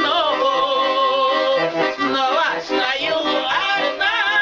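A woman and a man singing a folk song to a button accordion, on long held notes with a wavering vibrato.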